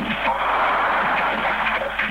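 Police two-way radio channel hissing with static while the transmission is open, with faint bits of voice near the start.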